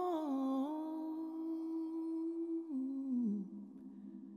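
A lone voice humming a slow, wordless melody: a long held note, then two steps down in pitch as it fades away near the end.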